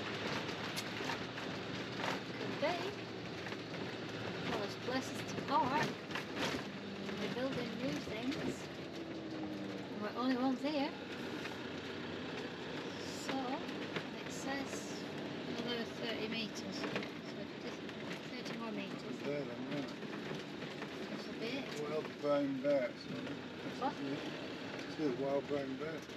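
A motorhome driving slowly over a gravel track, heard inside the cab: steady engine and road noise with scattered short knocks and rattles. Quiet talk comes through at times.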